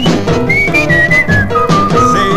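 Instrumental break in a 1950s R&B record with orchestra: a high, nearly pure-toned whistled melody sweeps up, then steps down through a few held notes over the band's backing.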